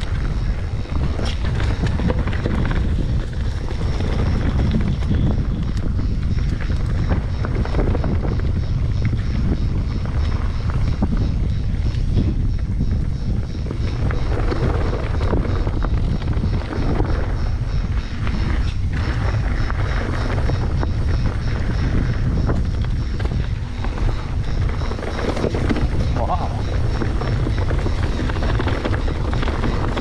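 Wind rumbling on an action camera's microphone as a mountain bike descends rocky dirt singletrack, with the crunch of tyres on stones and short rattles and clicks from the bike.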